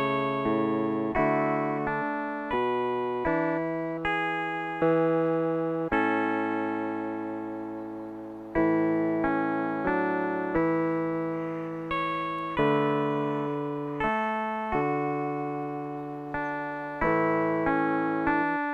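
Slow instrumental background music: chords struck one at a time, roughly every one to two seconds, each left to fade away.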